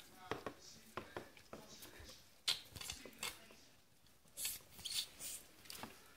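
Faint, irregular sucking hisses and soft wet clicks as fluid is drawn out of a newborn puppy's nose and mouth through a mouth-operated mucus aspirator tube, clearing its airway after birth.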